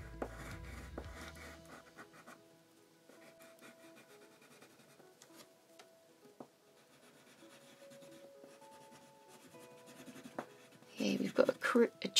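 Lyra Aquacolor water-soluble wax crayon scratching and rubbing faintly on black paper as strokes are drawn, with a few soft clicks.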